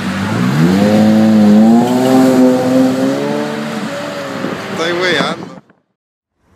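Pagani Zonda RS's Mercedes-AMG V12 running at idle, then revved: its pitch climbs about a third of a second in and holds with small wavers. The revs fall back about four seconds in, blip once more near the end, and the sound cuts off suddenly.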